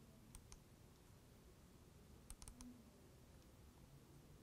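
Faint computer mouse clicks in a near-silent room: a double click about half a second in and a quick run of about four clicks just past two seconds, launching the Power Log program.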